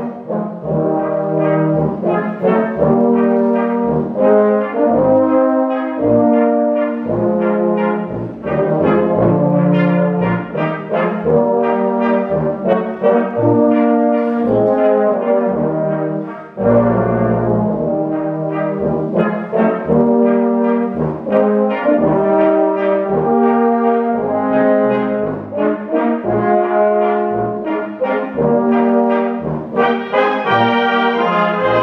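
Swabian brass band (Blaskapelle) with flugelhorns, tubas and clarinets playing a tune live in a hall, with held chords and a steady bass line, and a brief break in the phrase about halfway through.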